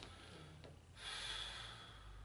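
A faint breath, a nasal exhale about a second long close to a handheld microphone, starting about a second in, over a steady low hum.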